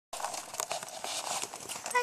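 Rustling, scraping noise with scattered small clicks, and a short pitched call beginning right at the end.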